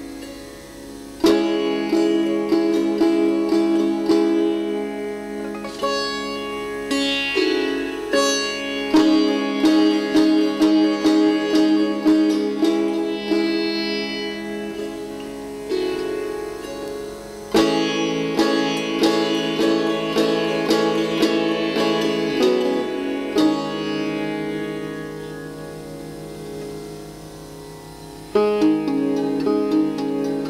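Sitar playing a melodic passage of plucked phrases, notes ringing on after each stroke. Hard strokes about a second in and again about 18 seconds in start new phrases; the playing thins out and grows quieter near the end before strong plucking resumes.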